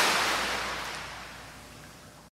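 A rushing, surf-like hiss, like a wave washing over, fading out steadily.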